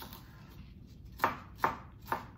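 A knife dicing jalapeño peppers on a cutting board: two sharp knocks of the blade on the board about half a second apart, past the middle.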